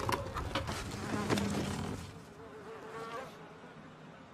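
A baby dragon's creature call: a wavering, buzzing chirr in its second half, after a few light knocks and rustles as the cloth over it is pulled back.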